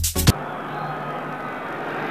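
Electronic dance music with a strong beat cuts off a fraction of a second in, giving way to the steady crowd noise of a televised football match.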